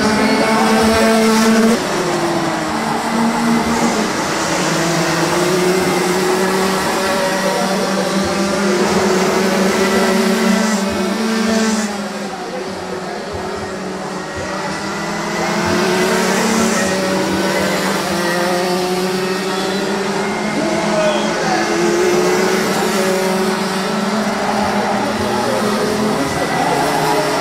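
Rotax Junior Max 125 cc two-stroke kart engines racing, their pitch rising and falling as the karts accelerate and slow through the corners. The sound drops for a few seconds about halfway through, then comes back up.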